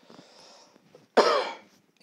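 A man coughs once, the burst starting suddenly just over a second in, after a faint breath before it.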